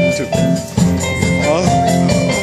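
A live band playing, with guitar and drums, sustained notes and a sliding pitch about one and a half seconds in.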